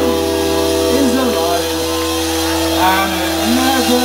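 Live rock band holding a chord over a steady low bass note, while the singer's voice slides up and down over it.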